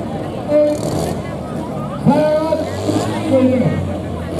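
Diesel farm tractor pulling a weight sled, its engine working hard under load, with a steady low engine note that grows stronger about halfway through. A voice talks over it throughout.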